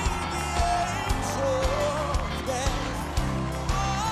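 Live band music with a steady drum beat under a male singer's vocal melody.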